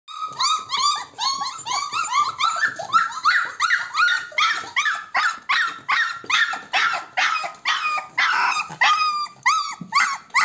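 Four-week-old Weimaraner puppies whining and crying: a steady run of short, high, arching cries, about two or three a second.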